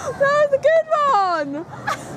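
A woman laughing in high-pitched squealing bursts, the last one sliding down in pitch about one and a half seconds in.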